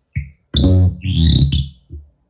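No-input feedback loop through guitar effects pedals (EHX Bad Stone and Polyphase phasers, Dreadbox and Nobels tremolos, Moogerfooger ring modulator): buzzy pitched electronic tones with a bright hiss high up, chopped into stuttering bursts that start and stop abruptly. A short blip comes first, then two longer bursts.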